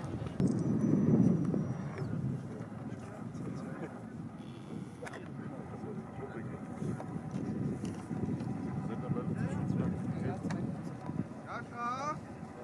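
Wind rumbling on the microphone, loudest in the first two seconds, with faint voices talking, clearest just before the end.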